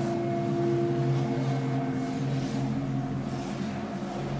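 Steady sci-fi drone of several held low tones, with soft whooshes pulsing above it at a regular pace.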